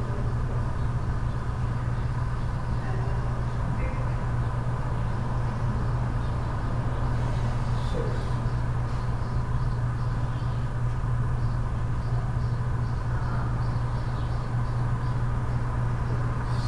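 Steady low machine hum filling a large room, with a fainter steady whine above it and no other distinct events.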